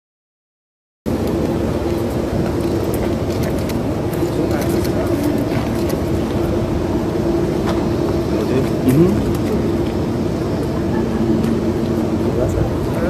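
A US Air Force C-17 Globemaster III's four turbofan engines running as it taxis, a steady, loud rumbling noise with a low hum. It starts abruptly about a second in.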